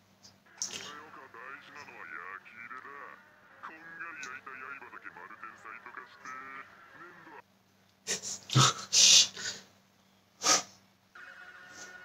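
Japanese anime dialogue from the episode, sounding muffled with its highs cut off, then a few sudden loud sound-effect hits about eight seconds in and another at about ten and a half seconds, followed near the end by a short tonal sting.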